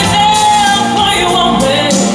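A man singing live into a handheld microphone over band accompaniment, holding one long note and then moving into a phrase that rises and falls.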